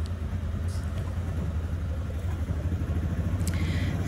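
Auto-rickshaw engine running steadily while driving, heard from inside the open passenger cabin: an even low drone with road noise.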